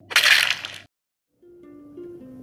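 A loud, noisy crunching burst lasting under a second, a sound effect at a cut. It is followed by a short silence, then soft outro music starts about one and a half seconds in.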